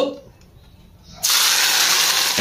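Hot oil poured over chopped chilies, garlic, scallions and sesame seeds, sizzling with a sudden loud hiss that starts about a second in and keeps going.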